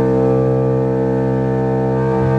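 Amplified electric guitar holding one sustained, distorted note that drones at a steady pitch with many overtones.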